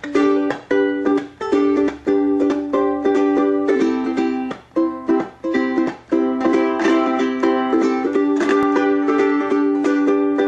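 Ukulele strumming chords as the instrumental introduction to a traditional gospel tune, with short breaks between strums in the first half, then steady continuous strumming.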